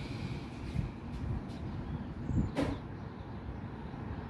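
Uneven low outdoor rumble, with a single sharp click about two and a half seconds in.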